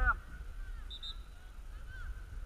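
Faint distant voices from the field over a low rumble, after the end of a spectator's word at the start. Two short high pips sound about a second in.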